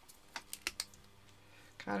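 Four quick, light plastic clicks as an acrylic paint marker is handled, then a voice begins near the end.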